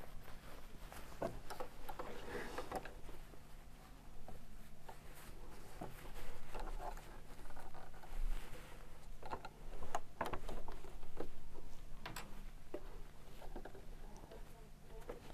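Knit fabric rustling and small scattered clicks as layered fabric and plastic sewing clips are handled and fed under an overlocker's presser foot, the machine not yet running. A faint steady low hum lies beneath.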